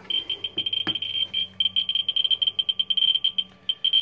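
Geiger counter clicking rapidly and near-continuously as its probe picks up radiation from a uranium-glazed plate, at about a thousand counts a minute. There is one knock about a second in.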